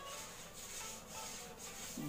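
Felt-tip marker writing on a whiteboard: faint, scratchy rubbing strokes as a word is written.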